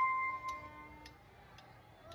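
The tail end of a street band's piece: a sustained ringing note fades out within about a second, leaving a near-quiet pause with a couple of faint ticks.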